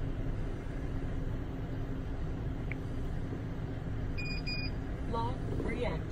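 Steady low rumble of a vehicle idling, with two short electronic beeps about four seconds in as the EZ Lock wheelchair docking lock is reactivated. A recorded voice notification begins near the end.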